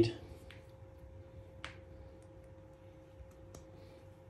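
A few faint clicks as cables are handled and a battery's balance-lead plug and discharger leads are connected, the clearest about a second and a half in, over a faint steady hum.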